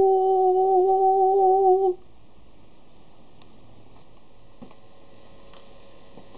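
A voice humming one steady note for about two seconds, ending abruptly, then low room tone.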